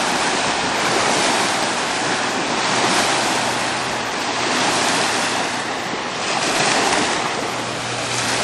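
Steady loud rush of water and wind from a motorboat running fast across the water close by, spray hissing off its hull. A faint steady low engine hum sits underneath, a little stronger near the end.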